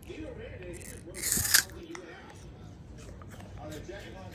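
Low background voices, with one brief hissing, crackling burst a little over a second in, the loudest sound here.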